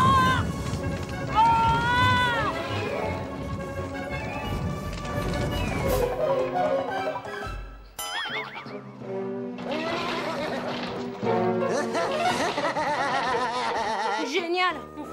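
Cartoon soundtrack music with comic sound effects: held, wavering tones at first, sharp hits about six and eight seconds in, then wobbly, boing-like music.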